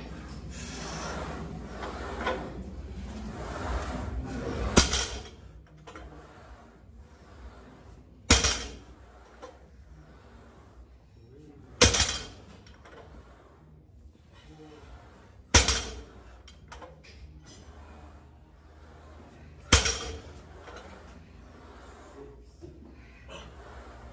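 A 405 lb loaded barbell set down on a rubber gym floor between deadlift reps: five sharp knocks of the plates, roughly every three and a half to four seconds, each with a brief rattle.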